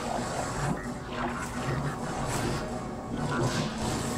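Soundtrack of an animated TV episode: background music mixed with sound effects.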